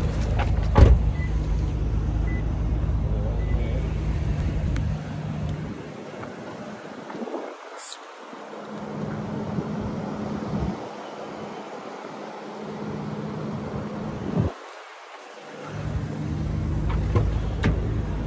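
Lexus RC running at idle, a steady low hum, with a sharp thump about a second in. The hum fades for several seconds in the middle and comes back strongly near the end.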